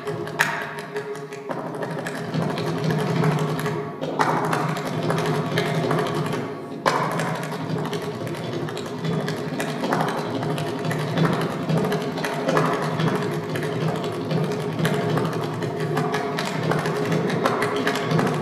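Mridangam played in a continuous fast stream of hand strokes, its tuned head ringing at a steady pitch under the strokes, with brief breaks about 4 and 7 seconds in.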